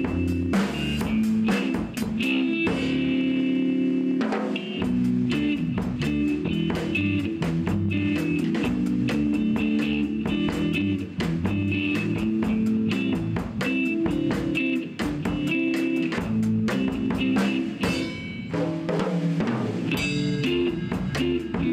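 Electric guitar and bass guitar jamming together with a drum kit keeping a steady beat.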